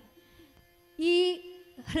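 A woman's voice holds one drawn-out syllable at a steady pitch for about half a second, starting about a second in, over a faint steady drone; a little before that there is a near-quiet gap.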